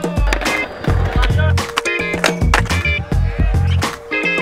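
A skateboard being ridden on concrete, with wheels rolling and sharp clacks and impacts of the board, under backing music with a steady beat.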